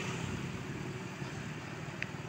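Light road traffic: motor scooters and a car driving away, their engines a low steady hum that slowly fades.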